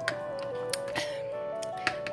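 Background music: a slow melody of held notes over sustained chords, with a few light clicks.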